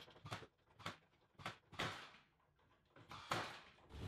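Cordless brad nailer firing brads into a pine cross brace: about five faint, sharp shots at uneven intervals.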